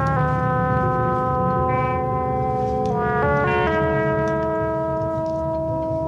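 Music from a 1974 film score: sustained held chords that shift to new pitches about halfway through.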